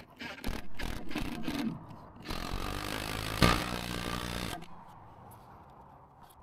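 Cordless drill boring into a wooden gatepost with a long bit: a few short bursts, then a steady run of about two seconds with a sharp knock partway through, stopping about four and a half seconds in.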